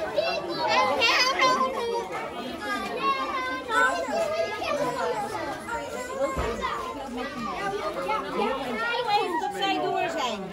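A crowd of young children talking and calling out all at once, their overlapping high voices forming a continuous, lively chatter.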